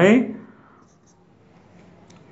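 Faint, brief squeaks of a marker on a whiteboard about a second in, in an otherwise quiet small room after a man's word trails off.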